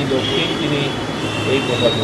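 A man speaking, with a steady high-pitched whine running under his voice.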